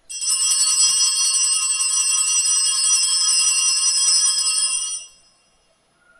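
Altar bells (sanctus bells) rung in a steady, bright jangle of many high tones for about five seconds, then stopped. This is the consecration bell marking the elevation of the host.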